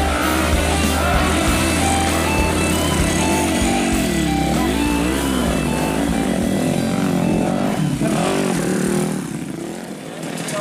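Dirt bike engine revving up and down repeatedly as it labours up a steep dirt hill climb. Background music with a steady beat plays over it and fades out near the end.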